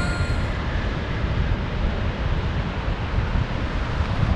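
Ocean surf washing and breaking at the water's edge, with wind rumbling on the microphone.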